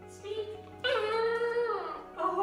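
A 2.5-month-old border collie puppy vocalizing: a brief yip, then one drawn-out call about a second long that falls in pitch at its end.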